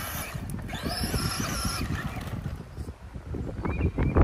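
Brushed-motor Traxxas Slash RC truck driving on a dirt track, its motor whine rising and falling with the throttle, over gusty wind rumble on the microphone.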